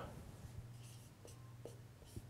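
Felt-tip marker writing on a whiteboard: a few faint short strokes about a second in, over a low steady hum.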